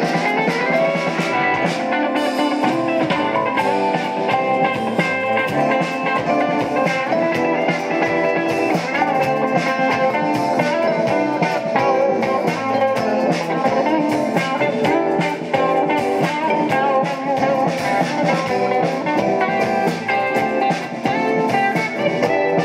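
Live band playing: electric guitar over bass guitar and drum kit, heard continuously and loudly.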